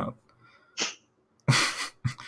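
A short hiss of breath, then about one and a half seconds in a sudden loud burst of breath into a headset microphone, lasting about half a second.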